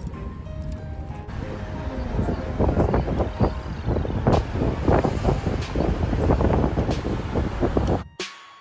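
Background music: a simple melody, then from about a second in a busier beat with sharp percussive hits. Under it runs the steady low road noise of a car in motion, heard from inside the cabin.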